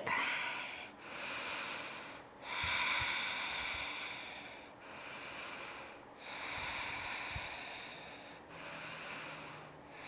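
A woman's slow, audible breathing: a steady run of long, soft breaths in and out, each lasting one to two seconds or so, while she holds a seated forward-fold stretch.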